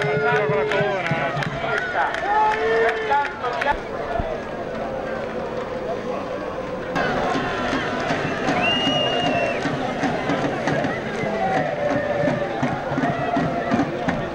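A crowd of spectators shouting and calling, many voices overlapping with no clear words. A short, steady, high whistle sounds for about a second around nine seconds in.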